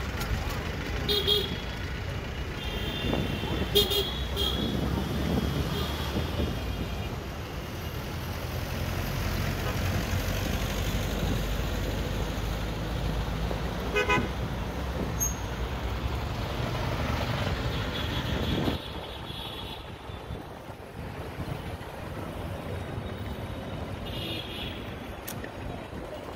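Busy city street traffic: a steady rumble of engines and road noise, with several short horn toots from passing vehicles. The rumble drops suddenly about three-quarters of the way through.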